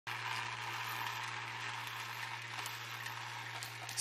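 Laser-cut plywood vibration coin sorter running: a steady low buzz from the vibrating machine, with coins rattling and clicking on the wooden tray and rail.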